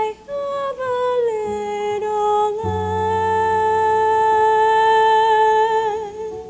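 Wordless hummed vocal line in a performance: the voice glides down over the first two seconds, then holds one long note with a slight vibrato. A low sustained accompaniment comes in beneath it about two and a half seconds in.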